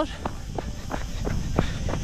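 Footsteps on a dirt and gravel trail, about three short crunching steps a second, over a low rumble.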